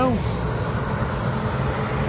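A steady low mechanical hum over a background of even noise, with the tail of a man's word right at the start.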